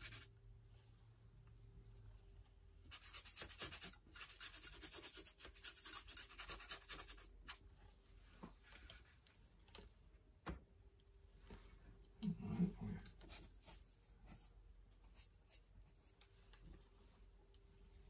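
A paintbrush scrubbing and dabbing oil paint onto a canvas panel: a faint, scratchy rasp that comes in spells, strongest a few seconds in. A brief low vocal sound comes just past the middle.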